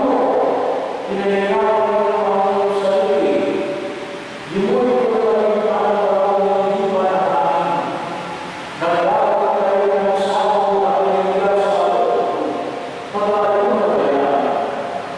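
Liturgical chant sung unaccompanied in long held phrases, with a new phrase beginning about every four seconds.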